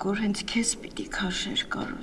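A voice speaking in Armenian, with faint music underneath.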